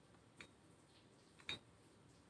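Two light clicks about a second apart, the second louder with a short metallic ring: the plates of adjustable dumbbells clinking on their handles as they are curled and lowered.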